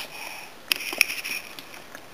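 Two light taps about a third of a second apart, a child's fingertip on a paper picture-book page, amid soft sniffing breath.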